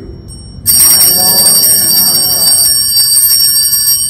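Altar bells (Sanctus bells) rung with a sudden loud jangle of several high ringing tones, starting under a second in and keeping on for about three seconds before dying away. This is the bell signal for the elevation of the host at the consecration.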